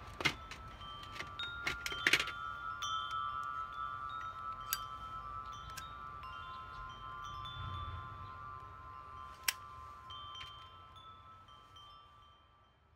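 Several chime tones ringing and overlapping, with a few sharp clicks, the loudest about two seconds in and near nine and a half seconds. The sound fades away near the end.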